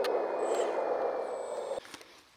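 1/14-scale radio-controlled Cat road scraper running, a steady mechanical whir from its electric drive and hydraulics with a faint high whine. It eases off slightly and cuts off abruptly near the end.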